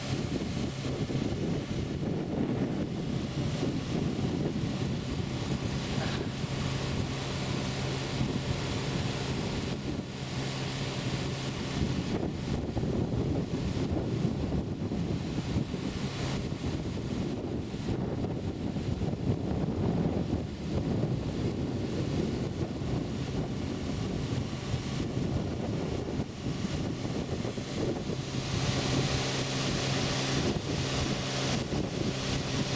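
Wind buffeting the microphone in gusts, over a steady low hum that fades out about twelve seconds in and comes back near the end.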